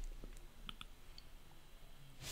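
Faint clicks at the lips while someone draws on an electronic vape pen: a couple of soft ticks a little past half a second in and one more shortly after, over quiet room tone.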